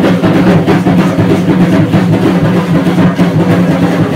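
Drum-led percussion music accompanying Aztec-style (danza azteca) dancing, with a fast, steady beat.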